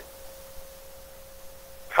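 A faint, steady single-pitched tone over low background hiss in a gap between speech.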